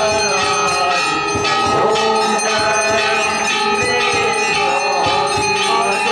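Temple bells rung continuously during aarti worship: a dense, steady ringing of many rapid strokes, with voices wavering faintly underneath.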